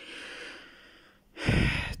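A man's breathing: a faint breath trailing away, then a short, loud intake of breath near the end.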